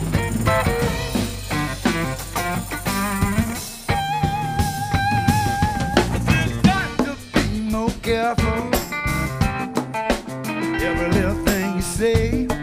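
Live New Orleans funk-blues band playing an instrumental passage: electric guitar lead lines over drum kit, bass and hand percussion. About four seconds in, the guitar holds one long note with vibrato for two seconds.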